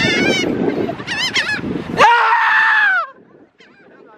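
A flock of gulls calling overhead: a run of quick, wavering calls, then, about two seconds in, one long drawn-out call lasting about a second, after which it goes much quieter.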